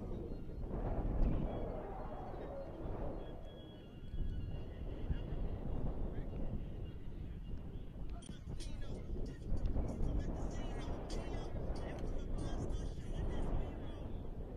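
Indistinct voices of people talking in the background over a steady low rumble, with a few short ticks in the second half.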